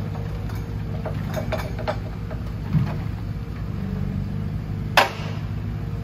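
Forwarder's diesel engine running steadily while its hydraulic crane lowers a log onto a log pile, with light clinks and knocks from the grapple and one sharp knock about five seconds in as the log is set down.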